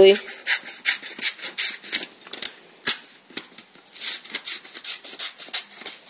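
Paper being cut to a pointed boat shape: an uneven run of short, rasping cutting strokes, a few each second, briefly thinning out around the middle.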